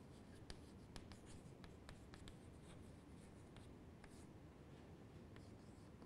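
Chalk writing on a chalkboard, faint: irregular short taps and scratches as letters are written.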